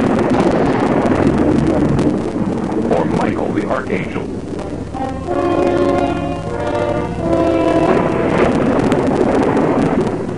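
Dramatic soundtrack sound effects: a loud rumbling noise running throughout, with held chords of several notes sounding about five and seven seconds in.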